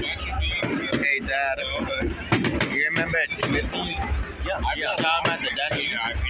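Aerial fireworks bursting with sharp, gunshot-like bangs picked up by a phone microphone, the loudest a little over two seconds in, over the talk of people close by.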